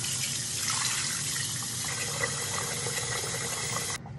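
Tap water running steadily into a sink while a face is rinsed with splashed handfuls of water. The running water cuts off suddenly at the very end.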